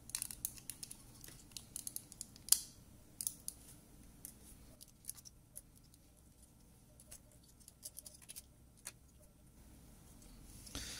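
Scattered small clicks and taps of hard plastic being handled as a receiver module is worked out of its clear plastic case. The loudest click comes about two and a half seconds in, and the clicks thin out in the second half.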